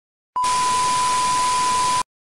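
Television static hiss with a steady test-tone beep over it, a glitch transition effect. It starts suddenly about a third of a second in, holds at one level, and cuts off abruptly at the end.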